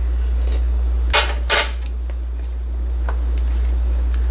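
Two quick clatters of a kitchen utensil against cookware about a second in, then a lighter tap, over a steady low hum.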